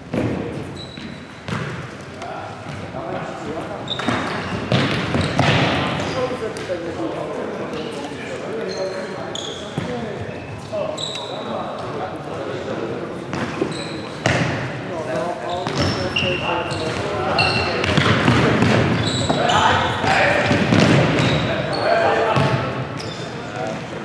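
Futsal game sound in a large sports hall: players shouting and calling to each other, the ball being kicked and thudding on the wooden floor, and short high squeaks of shoes on the court.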